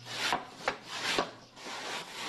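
A dried sheet of handmade Dai paper being peeled off its wooden drying frame, rustling in four or so short swishes.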